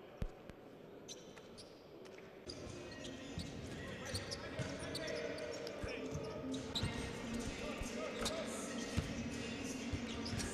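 Basketballs bouncing on a hardwood court in a large sports hall, over a murmur of crowd voices. The crowd murmur swells about two and a half seconds in; a single sharp thump comes just after the start.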